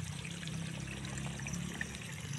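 Water running steadily in an irrigation channel.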